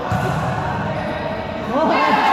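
Basketball bouncing on an indoor court floor in a large echoing hall, with voices calling out, louder near the end.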